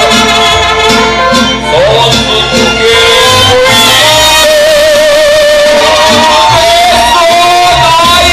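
Live mariachi band playing: a steady plucked bass-and-chord rhythm from the guitars under sustained melody lines. A male singer holds a long note with vibrato through the second half.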